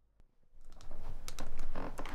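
Rapid run of small clicks and clatter, like small objects being handled, starting about half a second in and growing louder.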